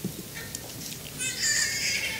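Papers handled on an acrylic lectern: a faint rustle, then a high-pitched squeak lasting about a second near the end.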